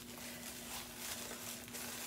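Quiet room tone with a steady low hum and a few faint soft handling sounds.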